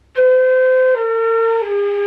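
Concert flute played with the flute turned too far out, so too much air passes over the embouchure hole: three held notes stepping down, the last the longest, with a total hauchig (breathy) tone and audible air noise.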